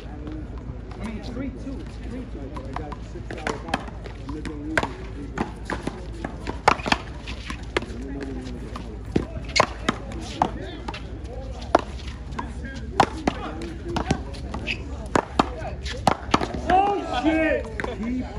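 One-wall paddleball rally: paddles hitting a rubber ball and the ball smacking off the concrete wall, sharp irregular hits about every second or two. Voices cry out near the end.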